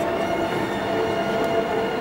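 Steady, reverberant background noise of a large indoor show arena, with a few long sustained tones held through it.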